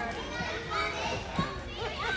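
Overlapping, indistinct chatter of children's and adults' voices in a large gym hall.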